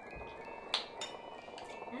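Soft, steady chime-like background music, with a short sharp click about three-quarters of a second in and a fainter one just after, from tasting off a metal spoon.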